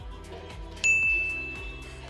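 Background music with a steady beat; about a second in, a single bright ding sound effect hits and rings out, fading over about a second.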